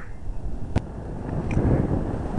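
Wind buffeting the microphone over a steady low outdoor rumble, with one sharp click a little under a second in.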